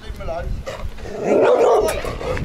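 A dog barking as it runs up, with a short pitched cry early on and a louder, rough bark through the second half.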